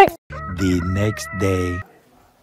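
A rooster crowing once, one call about a second and a half long that cuts off suddenly.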